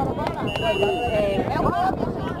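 Spectators' voices calling out, with one steady, high whistle blast lasting just under a second, starting about half a second in: a referee's whistle giving the signal for a free kick.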